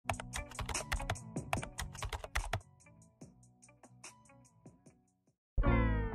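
Intro sound effect of rapid keyboard-typing clicks over low held musical notes. The clicks thin out after about two and a half seconds and stop. A brief gap follows, then a falling electronic sweep near the end.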